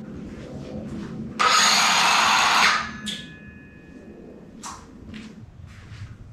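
A handheld cordless power tool revved in one loud burst of about a second and a half, then spinning down with a fading whine. A sharp click follows a couple of seconds later.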